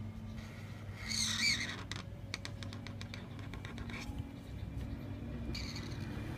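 Chisel-tip Artline 509A marker drawn across paper: a squeaky stroke about a second in, then a run of quick scratchy ticks, and another short squeak near the end, over a steady low hum.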